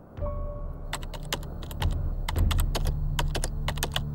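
Typing on a white plastic computer keyboard: quick, irregular key clicks. Background music with a low steady drone plays underneath.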